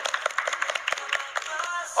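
A small group clapping their hands in quick, uneven claps.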